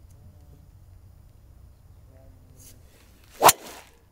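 Driver swing: a brief swish through the air, then one sharp crack as the clubhead strikes the teed golf ball about three and a half seconds in, with a short ring after. The ball is struck so that it pops up a little.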